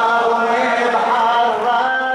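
A male reciter chanting an Arabic Shia mourning lament (latmiya), holding long notes that slide up and down in pitch.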